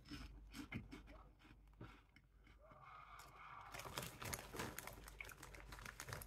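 Faint chewing of a light, airy baked corn puff snack: small scattered crunches that get busier in the second half.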